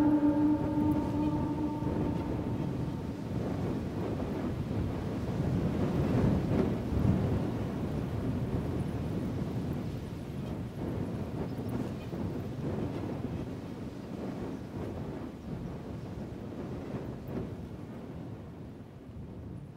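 The last held notes of the music die away in the first two seconds, leaving a low rumbling noise with no tune. The rumble swells about six seconds in and then slowly fades out.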